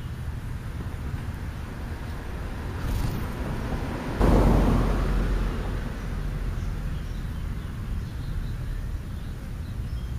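Outdoor ambience: a steady low rumble, with a sudden louder rush about four seconds in that fades away over a second or two.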